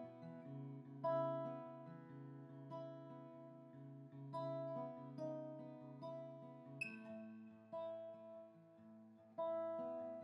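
Acoustic guitar playing a slow picked pattern, notes and chords plucked about one every 0.8 seconds, each ringing and fading before the next.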